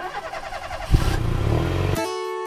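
A vehicle engine sound effect running under an animated logo, with a sharp knock about a second in.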